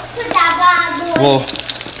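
Hot oil sizzling and bubbling vigorously around a battered sack of sheepshead roe freshly dropped in to deep-fry in a saucepan.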